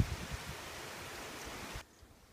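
Steady outdoor background hiss with a few soft low bumps, cutting off abruptly near the end.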